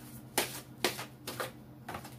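Tarot cards being shuffled by hand, giving four sharp card slaps about half a second apart.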